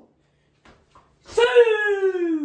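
A man's long, drawn-out wordless cry, starting about one and a half seconds in and sliding steadily down in pitch.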